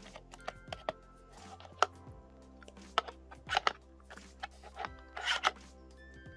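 Hands handling a kihno album's clear plastic case and black cardboard box: rubbing, scraping and a string of sharp plastic clicks, the loudest cluster near the end. Soft background music runs under it.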